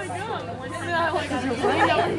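Indistinct chatter of several voices talking close to the microphone, with no words clearly made out.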